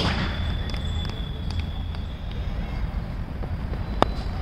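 Open-air ambience at a playing field: a steady low rumble with a faint, steady high-pitched whine over it and a few faint ticks. A sharp click at the very start marks an edit cut.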